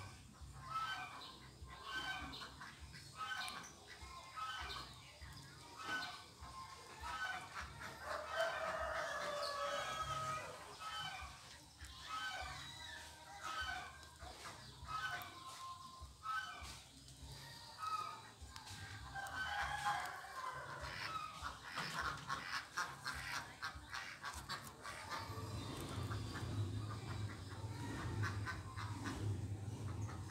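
Chickens clucking with a rooster crowing, short calls repeating throughout and denser runs of calling about a third and two thirds of the way in. A low steady hum comes in near the end.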